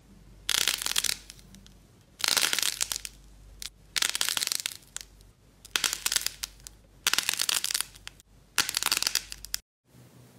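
Crisp crackling crunches as fingers squeeze a hard-shelled black ball and crack its coating apart. There are six separate crunches, each under a second long, with short pauses between.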